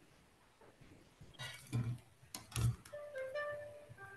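A few knocks and bumps as the smartphone is handled. From about three seconds in, soft instrumental relaxation music starts playing from the phone's speaker, a few held notes.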